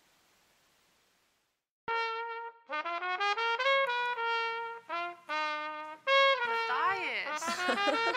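A gap of near silence between songs, then about two seconds in a new track starts with a melodic intro of short, separate held notes, joined near the end by sliding pitches.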